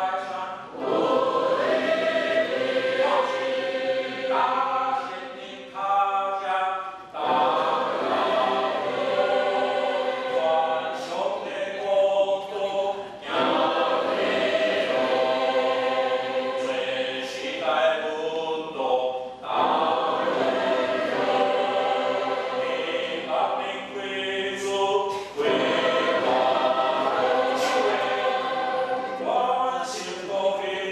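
Church choir singing a hymn together, in sustained phrases of about six seconds with short breaths between them.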